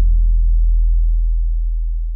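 Deep sustained electronic sub-bass note from the music, slowly fading, with nothing else playing over it.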